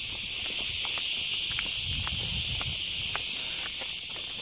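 Cicadas buzzing in a steady, continuous high-pitched chorus, with faint scuffs of footsteps in flip-flops on a gravel path.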